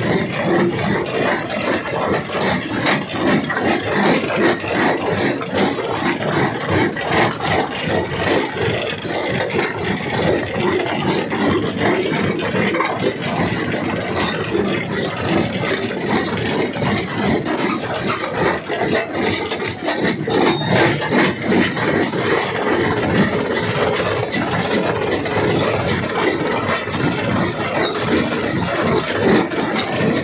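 Rock crusher running with rock going through it: a continuous clatter and grinding of stone, full of small knocks.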